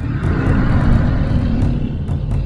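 A loud swelling rush-and-rumble sound effect in an outro logo animation's soundtrack, over a deep bass. The rhythmic drum hits drop out for about two seconds.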